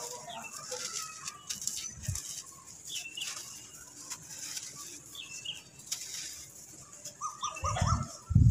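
Dry clumps of red sand crushed and crumbled by hand, gritty crunching with small cracks as grains trickle down onto loose sand in a plastic tub. A few short chirps sound in the background, and there are low thumps near the end.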